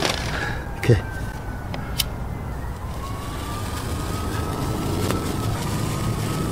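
Faint distant siren, a thin tone slowly rising in pitch over a steady low hum, with one sharp click about two seconds in.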